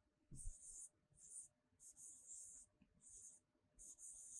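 Faint pen strokes scratching on a writing surface as a word is handwritten: about six short scratches with brief gaps between them.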